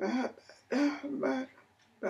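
A woman's voice making three short vocal bursts that the speech recogniser could not make out as words.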